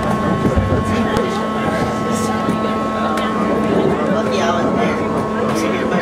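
BART train car in motion, heard from inside the car: a steady rumble with a set of fixed whining tones from the propulsion, and a few brief high squeaks or clicks.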